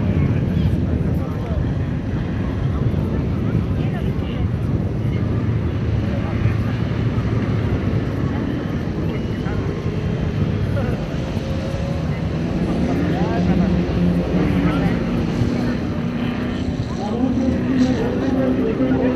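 Off-road jeep engines running hard as the cars race over dirt, a steady low rumble with the engine note rising and falling in the second half.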